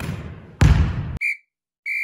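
A volleyball struck hard by hand, a sharp slap that rings on in a gymnasium until it is cut off abruptly about a second in. A short electronic beep follows, then a longer steady high beep near the end.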